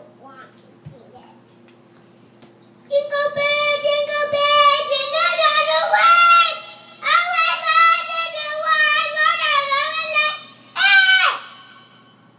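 A young boy singing loudly in a high voice, starting about three seconds in with long, wavering notes and a short break midway, ending with a brief loud note that slides down in pitch.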